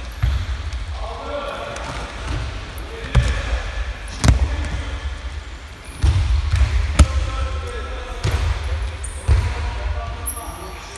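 Thuds of wrestlers' feet and bodies landing on the gym mats during freestyle wrestling drills, with several sharp knocks, the loudest about seven seconds in, and voices calling out in between.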